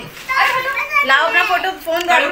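High-pitched children's voices chattering and calling out excitedly, without clear words.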